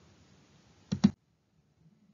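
Faint room hiss, then two sharp clicks close together about a second in, after which the sound cuts to dead silence.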